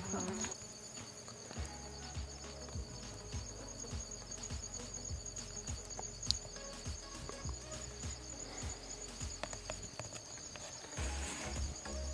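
Crickets trilling steadily, a high-pitched, finely pulsing chorus.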